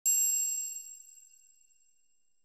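A single bright chime struck once, with several high ringing tones dying away over about a second: a logo jingle sound effect.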